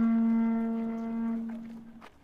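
A traditional Korean horn blown in one long, steady note at a single pitch, fading out about a second and a half in.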